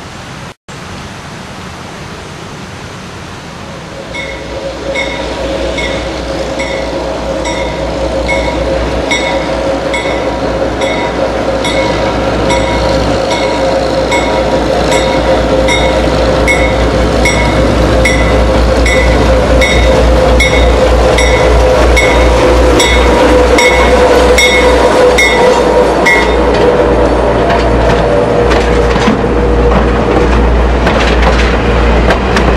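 GE 44-tonner diesel locomotive approaching and passing with its passenger coach, its engines running under a steady drone that grows louder over the first twenty seconds. A regular ringing sounds about twice a second from about four seconds in until shortly before the end.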